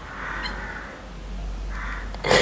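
A person crying: two breathy, strained sobs, without words.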